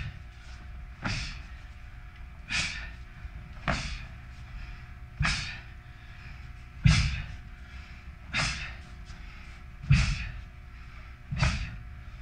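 Taekwon-Do practitioner's sharp breath exhalations, one with each technique of a pattern, eight in all at roughly one every second and a half, each starting with a short thump.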